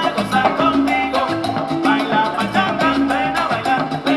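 A live salsa orchestra playing an up-tempo number with percussion driving a steady beat under the band.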